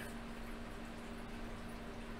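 Faint room tone: a steady low hum under a light hiss.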